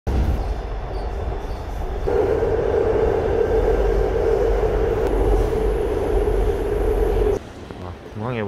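Inside a moving airport-line commuter train car: a loud, steady running rumble, with a steady hum joining about two seconds in. Near the end it cuts off abruptly to much quieter indoor background.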